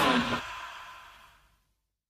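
The final chord of a melodic rock band song ringing out and dying away, down to complete silence about a second and a half in.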